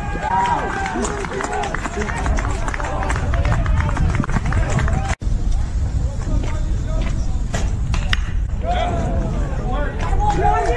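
Outdoor ballfield ambience: indistinct voices of players and spectators calling out over a steady low wind rumble on the microphone, with scattered light clicks. The sound cuts out for an instant about halfway through.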